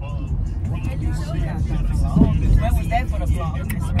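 Steady low rumble of a car on the move, heard from inside the cabin, with quieter voices talking over it.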